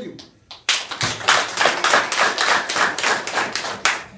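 A crowd clapping: loud, sharp hand claps start about a second in, fall into a quick, even rhythm of roughly six claps a second, and stop near the end.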